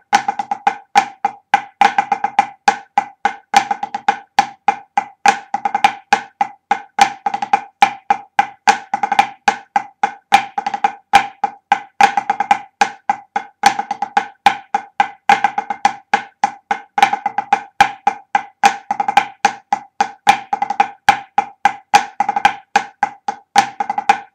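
Pipe band snare drumming exercise played with sticks at a steady tempo: quick grouped strokes with flams, each stroke sharp and ringing with the same pitch.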